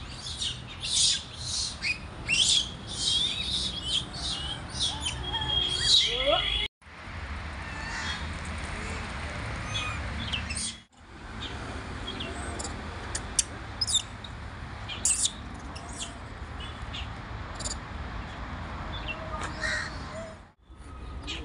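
Birds chirping with many short, high calls close together for the first several seconds, then sparser calls over a steady low background rumble. The sound cuts out abruptly twice.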